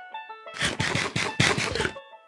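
Background music with a crunching, chewing sound effect of biting into an apple, starting about half a second in and lasting well over a second.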